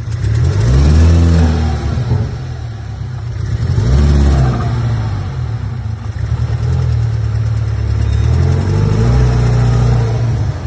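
Volkswagen Jetta TSI's turbocharged four-cylinder engine, revved up and back down about three times. It runs rough and without power after overheating, sounding like a Fusca (old VW Beetle). The shop first blamed the cylinder head, but the fault was traced to the intake manifold.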